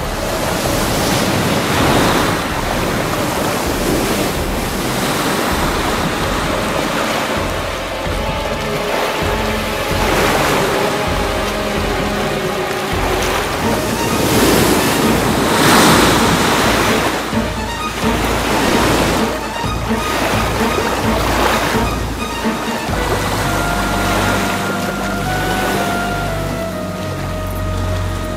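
Heavy ocean surf crashing and churning in repeated surges, with background film music under it whose held tones and bass notes come forward in the last few seconds.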